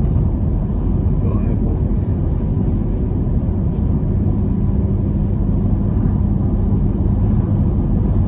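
Steady road and engine rumble heard inside the cabin of a car cruising at highway speed, with a constant low hum and no changes.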